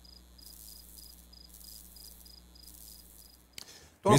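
Faint cricket chirping: a steady run of short, high chirps about three a second, cutting off abruptly shortly before the end.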